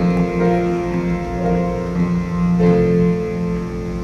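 Instrumental introduction to a slow duet ballad: sustained chords changing about once a second over a steady held low note, with no voices yet.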